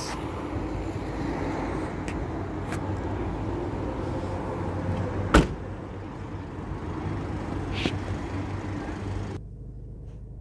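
Car tailgate being shut with one sharp thump about five seconds in, over steady open-air background noise. A lighter click follows near eight seconds as the driver's door is opened, and the sound drops suddenly to a quiet, closed-in car cabin near the end.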